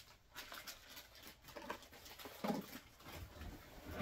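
A quiet room with a few faint, brief handling noises, from small cardboard blind boxes and vinyl mini figures being handled and set down.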